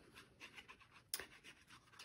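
Faint scratching of a glue bottle's nozzle dragging along a chipboard strip as Fabri-Tac glue is squeezed out, with one sharp click about a second in.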